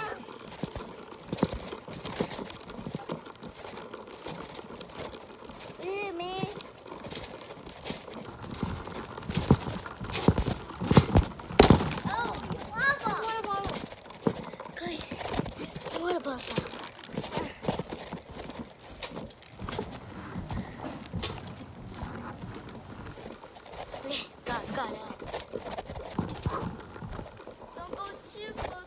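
Bare feet and bodies landing on a trampoline mat: an irregular run of thumps, loudest about ten to twelve seconds in, with brief children's voices between them.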